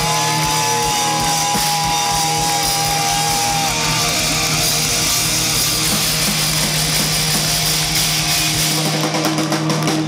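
Live rock band playing loud, electric guitars over drums and bass, heard in a hall. A lead guitar holds one long sustained note for the first few seconds. Near the end the bass drops out, leaving drum and cymbal hits.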